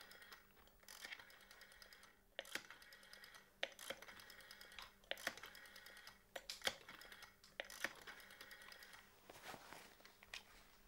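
Faint clicking from an ornate corded telephone being dialled, in about eight short runs of rapid ticks, one per digit, before the call connects.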